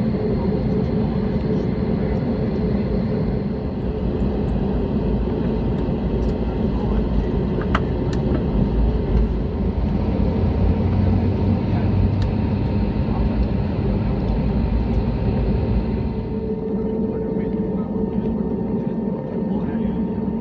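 Airbus A320neo jet engines at takeoff thrust, heard inside the cabin: a steady loud roar with a few held tones over the rumble of the takeoff roll. The higher part of the noise eases about sixteen seconds in as the wheels leave the runway.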